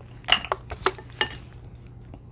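A metal fork clinking against a plate a few times, sharp separate clinks with a brief ring, the loudest about a third of a second in.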